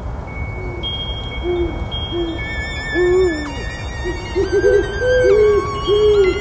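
Owl hooting, a series of short low hoots, some in quick pairs, over a steady low background noise and thin, held high tones, as in a spooky night sound effect.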